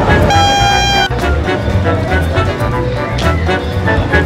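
A street cart vendor's hand horn gives one steady toot of under a second, near the start, over background music with a steady beat.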